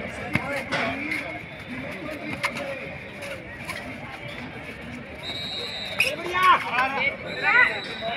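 Shouting voices over crowd babble at a kabaddi match, with a few sharp slaps or claps scattered through. The loudest shouts come in the last two seconds. A high steady tone sounds twice in the second half.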